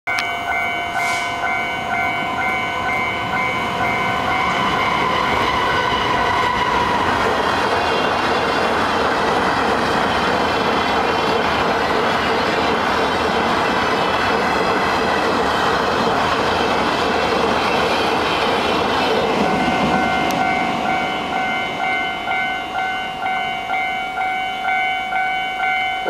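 A level-crossing warning bell rings in a steady, repeating electronic tone while a freight train of flat wagons rolls through the crossing. The train's wheel and wagon noise is loudest from about 7 to 20 seconds in and drowns out the bell, which is heard clearly again afterwards.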